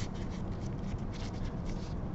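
Filter paper crinkling as gloved hands fold it into a cone, in short irregular crackles, over a steady low hum.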